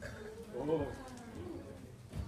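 A bird's cooing call: one coo that rises and falls, about half a second in, over low background murmur.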